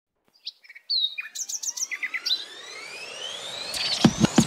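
Birds chirping in a quick run of short, varied calls, followed by a smooth tone rising steadily in pitch over the last two seconds.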